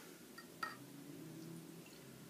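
Bottled tea poured from a glass bottle into a drinking glass, a faint trickle of liquid, with a couple of light clicks about half a second in.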